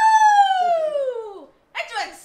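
A long, high, pitched vocal call that rises briefly and then glides steadily down in pitch, dying away about a second and a half in.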